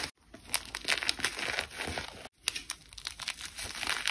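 A hand squeezing and crumbling chunks of dried cornstarch: a dense, crunchy crackle of many small snaps, broken twice by a brief silent gap, just after the start and a little past two seconds in.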